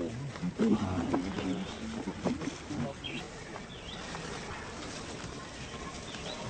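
Long-tailed macaques giving low, rough grunting calls, loudest about a second in and fading after three seconds, with a few short high chirps near the middle.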